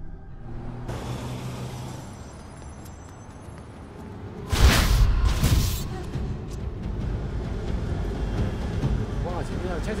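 Horror film soundtrack: music and effects with thin high tones, two loud noisy swells about halfway through, then a voice near the end.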